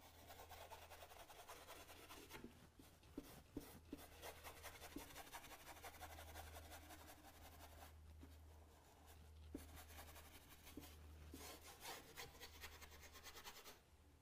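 Faint scratchy rubbing of a large brush dragging oil paint across canvas in repeated strokes, over a low steady hum.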